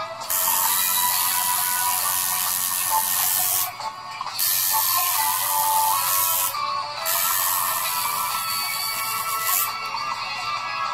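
Tattoo machine buzzing in three runs of about two to three seconds each, stopping briefly twice, over background music.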